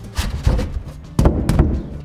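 A 12 mm plywood bracing board being slid up into place under the top of a plywood kicker ramp, knocking and thudding against the ramp's frame several times, loudest about a second in.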